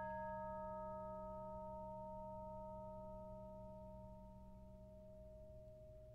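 Bells ringing on after the last chord of a baroque aria, several steady tones fading slowly away.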